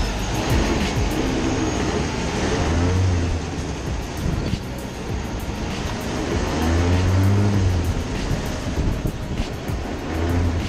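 Small go-kart engine running as the kart drives along a city street, its pitch rising and falling as it speeds up and eases off, twice over.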